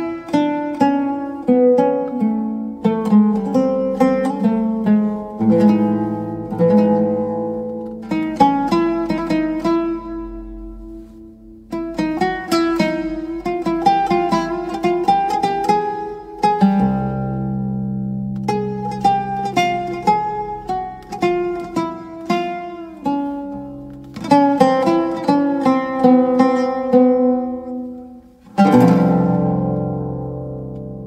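Oud playing a fast melody of plucked notes in phrases over held low notes. There is a short pause near the end, then a hard strummed chord.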